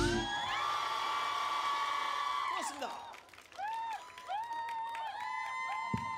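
Concert crowd screaming and cheering as the band's song ends, many high voices holding and sliding over one another. The cheering fades about three seconds in, then picks up again in short repeated whoops.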